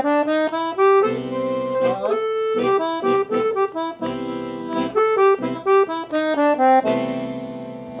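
Piano accordion playing a quick improvised melodic run on the A blues scale over a held C major seventh chord, the notes moving in fast steps with sustained chords swelling underneath in a few stretches.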